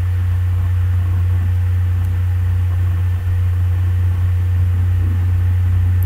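Steady low hum with a faint hiss over it, unchanging throughout.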